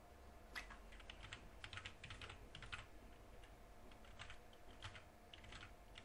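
Faint typing on a computer keyboard: a quick, irregular run of keystrokes as numbers are entered.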